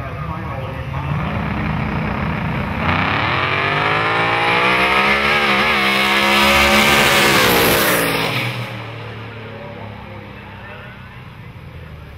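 Two small-tire drag cars at the start line: a low engine rumble, then a full-throttle launch about 3 seconds in. Engine pitch climbs as they run down the strip, loudest as they pass, then falls away sharply about three-quarters of the way through as they head off downtrack.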